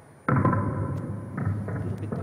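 Chain-reaction demonstration of mousetraps loaded with ping-pong balls, played back over loudspeakers: a dense clatter of snapping traps and bouncing balls that starts suddenly.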